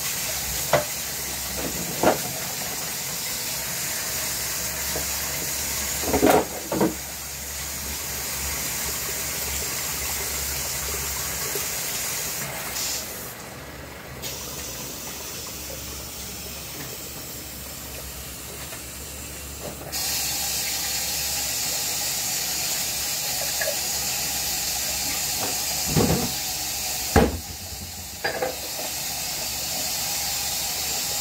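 Kitchen tap running into a sink during hand dishwashing, a steady gush of water that drops to a thinner, quieter stream for several seconds in the middle. Dishes and containers knock and clink against the sink now and then.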